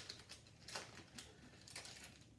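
Faint, brief crinkling and rustling of foil trading-card pack wrappers and cards being handled, a few separate soft rustles.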